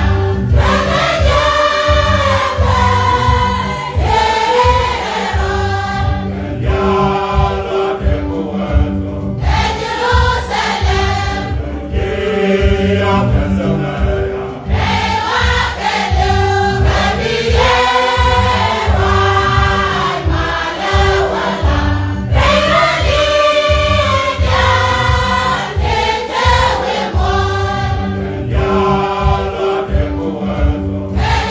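A choir singing a hymn in Nuer, many voices together, over a steady low keyboard accompaniment.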